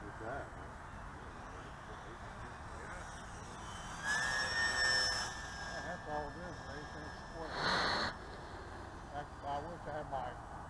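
Electric motor and propeller of an E-flite P-51 Mustang ASX RC plane in flight, a high whine that rises in pitch about four seconds in and then holds steady as the plane passes. A brief rushing burst of noise follows near the eight-second mark.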